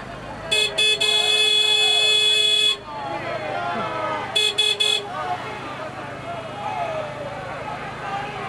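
A vehicle horn honking: two short toots, then a long blast of about two seconds, and a little later three quick toots, over the voices of a crowd.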